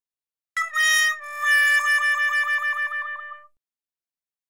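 Cartoon-style sound effect added in editing: one held, reedy musical tone of about three seconds that wobbles rapidly in its second half and then cuts off, marking a missed throw at the ball-toss game.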